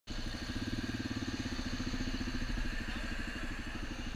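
Suzuki DR-Z400SM's single-cylinder four-stroke engine running steadily at low revs, an even pulsing thump with no revving.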